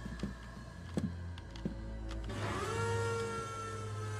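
Audio from an animated sci-fi episode: a low, steady rumble with a few faint clicks, then a sustained tone that rises slightly and holds from about halfway through, like a machine hum or a swell in the score.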